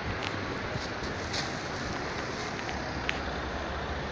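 City street ambience: a steady hiss of road traffic noise, with a few light clicks.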